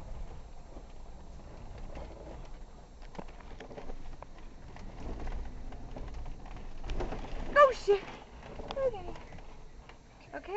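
Low, steady rumble of an off-road vehicle crawling along the trail, with voices over it and a short high-pitched vocal exclamation about seven and a half seconds in.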